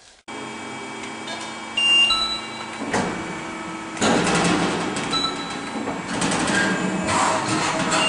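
Schiavi HFBs 50-25 press brake running: a steady machine hum with several fixed tones that starts abruptly from near silence. Louder surges and knocks come through it a few times as the machine works.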